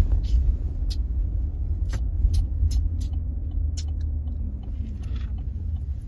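Steady low rumble of a moving car heard from inside the cabin, with a handful of sharp clicks between about one and four seconds in.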